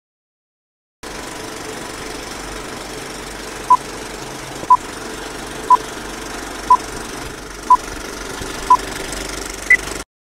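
Film-leader countdown sound effect: a steady film-projector rattle starting about a second in, with a short beep once a second six times, then a higher beep just before it cuts off suddenly.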